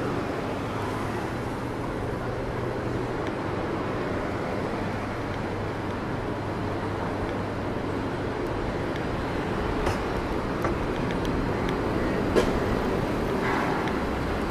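City street traffic: cars and a minivan passing at low speed, a steady wash of engine and tyre noise with a low engine hum underneath. A few short sharp clicks come near the end, the loudest about twelve seconds in.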